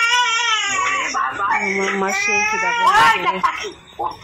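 Baby crying: long, high, wavering wails in the first second or so, then shorter broken cries and whimpers.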